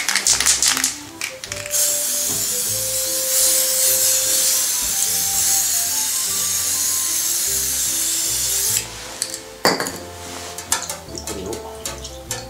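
Aerosol spray paint can spraying paint onto a water surface in a tray: one steady hiss lasting about seven seconds, from about two seconds in, with background music playing over it.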